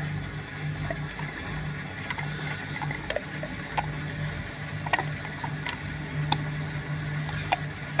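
Hotpoint Ariston front-loading washing machine on a fast spin cycle, its drum loaded with plush toys: a steady low hum from the motor and drum, with scattered light clicks.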